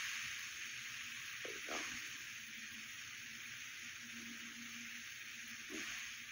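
Quiet, steady hiss of a phone or webcam microphone's background noise, with a couple of faint brief sounds, one about a second and a half in and another near the end.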